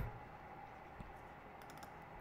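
Faint clicks of computer keys: a single click about a second in, then a quick run of several light clicks near the end, over a low steady room background.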